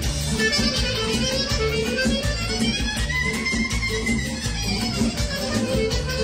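Romanian party music played by a wedding band, with a steady beat and a melodic lead line that arches up and back down about halfway through.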